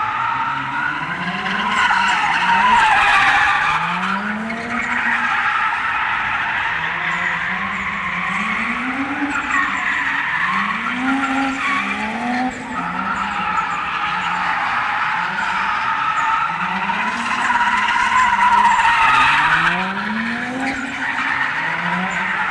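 Toyota Chaser JZX100's straight-six engine revving up and falling back again and again as the car drifts, with its tyres squealing throughout. The squeal is loudest a few seconds in and again near the end.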